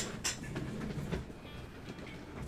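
Handling noise: two sharp clicks about a quarter second apart, another about a second in, over a low rumble.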